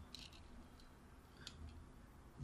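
Near silence, with a few faint light clicks near the start and about one and a half seconds in from a hand handling a coil of enamelled wire and a red sheet.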